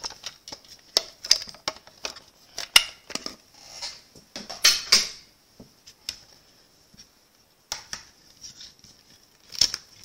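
Irregular clicks, taps and short rustling scrapes of plastic die-cutting plates, a thin die and cardstock being handled and separated by hand, with two louder scrapes about three and five seconds in and a brief lull after six seconds.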